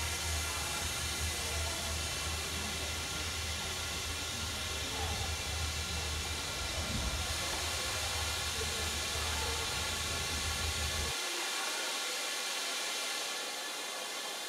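Steady low hum and hiss of a sleeper train standing at a station platform. The low hum cuts off suddenly about eleven seconds in, leaving a steady high hiss.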